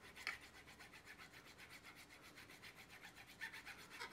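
Nut slotting file rasping back and forth in a string slot of a bone guitar nut: faint, quick, even strokes, about five a second.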